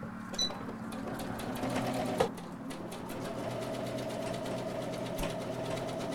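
Emerald 203 electric sewing machine stitching through layered plaid pot-holder fabric, running steadily with rapid needle strokes. A single sharp click comes about two seconds in.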